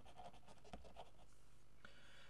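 A pen writing a word by hand on paper: a quick run of faint scratching strokes.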